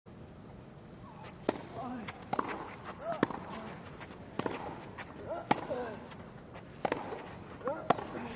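A tennis rally on grass: sharp racket strikes on the ball about once a second, some of them followed by a player's short grunt, over a quiet crowd hush.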